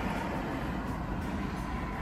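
Steady low rumble and hiss inside a stationary car, with no distinct events.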